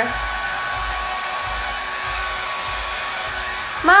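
Handheld electric hair dryer blowing steadily: an even rushing hiss with a faint steady motor whine.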